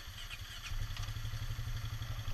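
ATV engine running with a steady low throb, picking up and growing louder about two-thirds of a second in as it pulls away.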